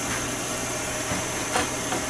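Propane torch flame hissing steadily, with a faint click about one and a half seconds in.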